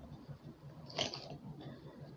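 Christmas ornaments being handled close to the microphone: faint rustling, and one sharp click or crunch about halfway through.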